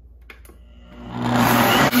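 Countertop blender motor starting up about a second in and building to a steady run on high, grinding soaked white rice with water into a batter.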